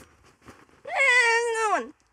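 A young girl's long, high-pitched squeal, acted as if scared, starting about a second in and dropping in pitch as it ends.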